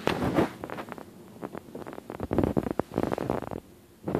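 Rustling and rubbing right at the phone's microphone, in irregular crackling bursts, heaviest at the start and again in the second half before it drops away near the end.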